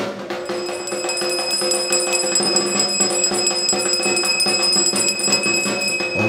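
A puja bell rung continuously during the arati, a steady high ringing that starts about half a second in and stops abruptly at the end, over sustained temple music.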